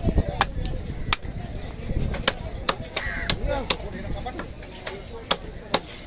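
Heavy cleaver chopping a cobia into pieces on a wooden block: about a dozen sharp chops at an uneven pace, roughly two a second, as the blade goes through flesh and bone into the wood.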